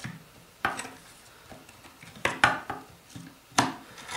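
Handling noise: a few sharp clicks and knocks as a 48 mm stepper motor is set into place against a 3D printer's frame, the loudest in the middle and near the end.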